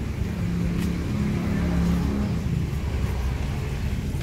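A motor vehicle engine running nearby over a steady low rumble; its hum is loudest in the first half and fades out a little past the middle.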